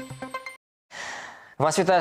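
Electronic theme music with regular pulses, cut off about half a second in. After a moment of silence comes a short breathy hiss that fades away, then a man's voice begins.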